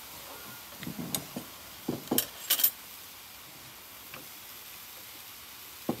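A few light kitchen clatters of utensils knocking against cookware, bunched in the first three seconds, the sharpest about two and a half seconds in.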